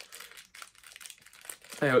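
Faint crinkling of the plastic blind-bag packaging of a mystery pin as it is handled and opened: a run of small, irregular crackles. A voice starts near the end.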